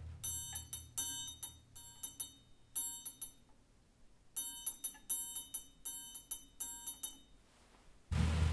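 Orchestral triangle struck lightly and quickly with mallets, each stroke leaving a high metallic ring. There are two runs of rapid strokes with a pause of about a second between them.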